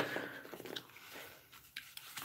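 A quiet pause: low room noise with two faint mouth clicks, about a second in and again near the end.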